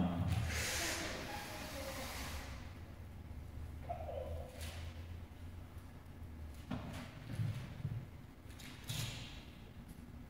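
Paper rustling of Bible pages being turned to find a passage, loudest in the first two seconds and then dying down to scattered soft rustles and faint room sounds.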